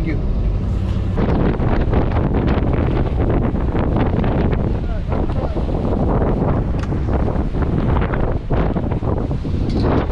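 Strong storm wind buffeting the camera microphone in loud, uneven gusts. It starts about a second in, after a moment of vehicle cabin rumble.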